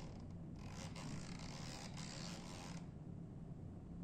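A 70-degree ultrasonic angle probe scraping over an SDH calibration block as it is moved to find the peak echo from the drilled hole, a rasping scrape from about half a second in until nearly three seconds. A steady low hum runs underneath.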